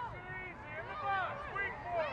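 Several voices shouting and calling out at once, overlapping, from players and people on the sidelines of a youth lacrosse game.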